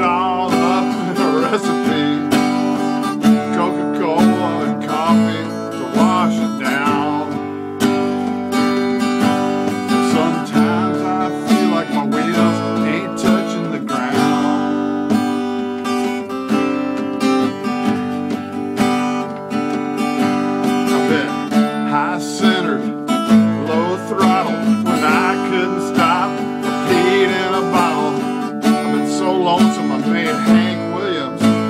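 Steel-string acoustic guitar strummed steadily in a country song's chord rhythm.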